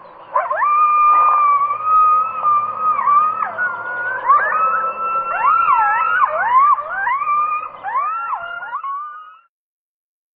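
Hunting hounds baying on the run in a chase: long drawn-out bawls that bend and swoop in pitch. In the second half two voices overlap. The calls stop abruptly near the end.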